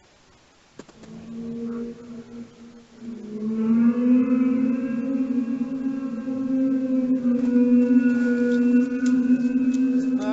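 A loud, unexplained droning call of the kind reported as 'sky trumpets', said to come from the sky: a shorter pitched tone about a second in, then from about three seconds in a long, steady, trumpet-like tone with many overtones. Its source is not known.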